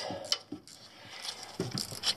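A few short, sharp clicks and faint handling sounds of a wrench working a valve cover bolt, most of them in the first half-second.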